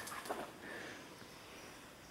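Faint background noise, with a short soft sound about a third of a second in.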